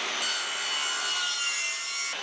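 Sliding mitre saw running and cutting, a steady high-pitched whine of the motor and spinning blade with the rasp of the cut.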